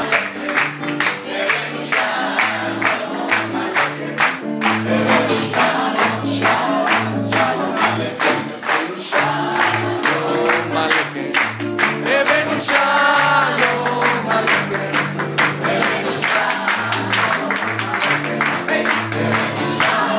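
Live music with several voices singing over a steady bass line and beat, and the audience clapping along in rhythm.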